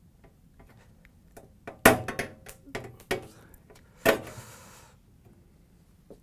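Needle-nose pliers squeezing the tabs of a small plastic washer lid cam to release it from the lid: a scatter of sharp plastic-and-metal clicks. The loudest snap comes about two seconds in, and another comes about four seconds in, followed by a short scraping hiss as the cam comes free.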